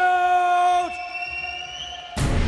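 A boxing ring announcer's drawn-out call of a fighter's name, held on one high note and falling away about a second in. A faint, thin high tone lingers after it.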